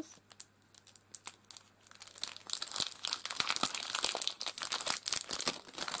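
Clear plastic cellophane sleeve crinkling as it is opened and a pack of craft papers is handled inside it. It is fairly quiet with a few light clicks at first, then turns into dense, continuous crinkling a little over two seconds in.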